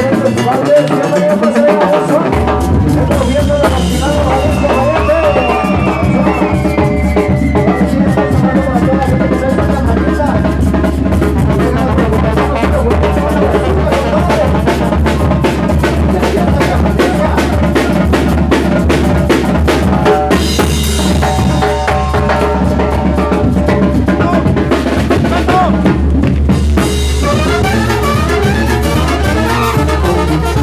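Live Mexican banda (brass band) playing a son: brass over bass drum and snare keeping a steady driving beat, with a deep bass line that comes in about two seconds in.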